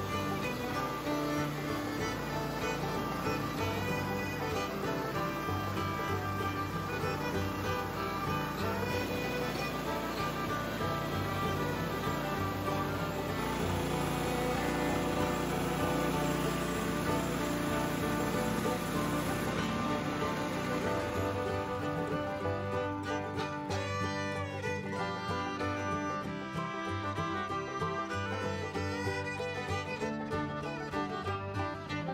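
Background instrumental music with fiddle.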